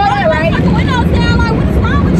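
Steady low rumble of an automatic car wash running over the car, heard from inside the cabin, with excited talking over it.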